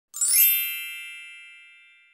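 A single bright, shimmering chime sound effect over an opening title card: a quick upward sweep into one ringing, bell-like tone that fades away over about a second and a half.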